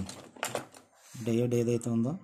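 A man's voice speaking Telugu, with a brief pause about a second in.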